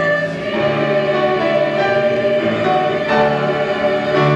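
Mixed choir of men and women singing together, holding sustained notes that move to new chords every second or so.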